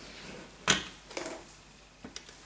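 Plastic ice stick pushed into a slot of a Pop-Up Olaf barrel toy: one sharp plastic click about two-thirds of a second in, then a fainter click.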